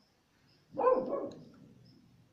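A single short vocal sound, not speech, about three-quarters of a second in, fading away within about half a second.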